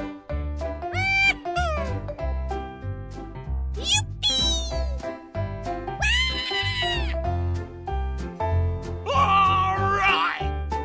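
Upbeat background music with a steady beat and a heavy bass. About six drawn-out squealing calls ride over it, each rising then falling in pitch, the longest lasting about a second.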